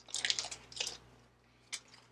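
Sublimation paper and tape being peeled and crumpled off a hot mug, a crinkly rustle in the first second. A short tick follows near the end.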